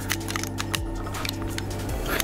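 Background music with steady held tones, over light scattered clicks and taps from hands handling and moving the joints of a collectible action figure.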